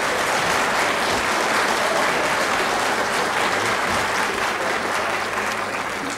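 Studio audience applauding, a dense steady clapping that eases off slightly near the end.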